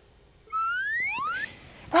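A cartoon-style whistle sound effect: two whistle-like tones sliding upward in pitch, one overlapping the other, starting about half a second in and ending around a second and a half.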